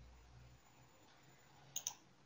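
Two quick computer mouse clicks near the end, over near-silent room tone.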